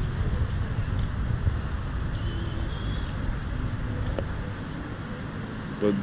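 Steady wind rumble on the microphone mixed with the tyre noise of a Segway Mini Pro self-balancing scooter rolling over paving stones, easing a little in the last second or so.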